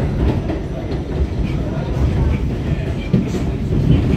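R68 subway car running at speed through a tunnel, heard from inside the car: a loud, uneven rumble of wheels on rail, with a few short clacks.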